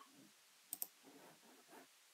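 Near silence broken by two quick computer mouse clicks close together, a little under a second in.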